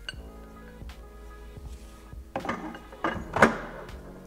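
Metal clinks and clatter of a long steel valve wrench being lifted off and set down into a hard tool case, the loudest knock about three and a half seconds in, over steady background music.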